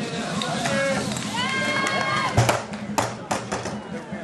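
Onlookers shouting encouragement in long drawn-out calls, with two sharp knocks about two and a half and three seconds in as rolled fire hoses are thrown out and their couplings hit the running track.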